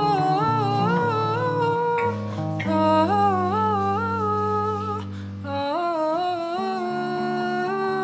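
Wordless female singing, held notes that slide and waver between pitches, over sustained low guitar notes, in a freeform jazz improvisation. The voice breaks off briefly twice, about two and five seconds in.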